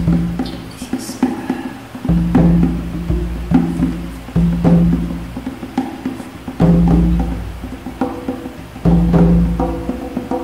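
Jazz trio playing free improvisation: sparse knocking and clicking percussion over low notes that start suddenly every one to two seconds and ring away.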